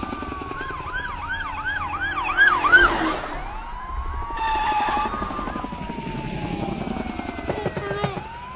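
Police siren sounding: a long slow wail falls in pitch, switches to a rapid yelp of about three or four quick rises and falls a second, then goes back to a wail that rises and slowly falls. A brief loud rush of noise comes about three seconds in.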